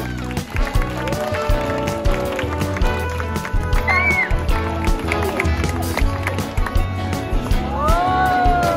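Music with a steady beat and a melody over it.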